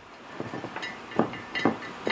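Handfuls of shredded cabbage being dropped into a large glass jar: a soft rustle with a few light knocks against the glass.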